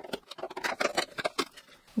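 Cardboard advent-calendar door being worked open by hand: a quick, irregular run of scratchy clicks and rustles of card.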